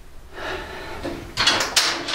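Handling noise: rubbing and scraping with a few light knocks, starting faint and getting louder in the second half.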